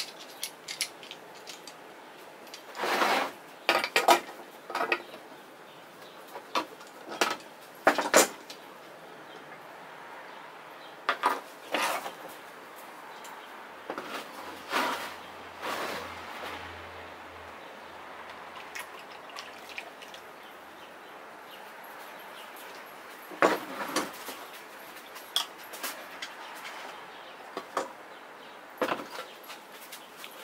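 Sharp clinks and knocks of steel pliers and tin cans being handled on a table. In the middle comes a steadier stretch of linseed oil being poured from its metal can into a plastic measuring cup.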